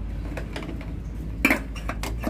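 Light metallic clinks from hand work on a scooter's fuel line and tools, with a sharper knock about one and a half seconds in, over a low steady hum.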